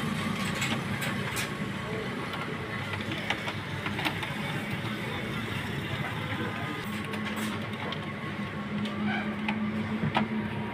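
Scattered light clicks and knocks from the plastic casing of an HP LaserJet Pro 400 laser printer as it is handled, over a steady low background hum.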